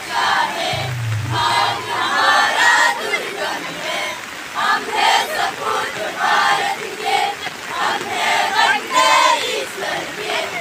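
A group of school students singing a patriotic song together as a choir.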